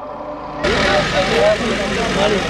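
Large outdoor crowd of spectators, with distant voices calling over a steady noisy rush that cuts in abruptly about half a second in.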